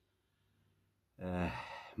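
A man's voice: after a pause, a drawn-out voiced hesitation sound, a fading 'aah' of under a second that leads straight into speech.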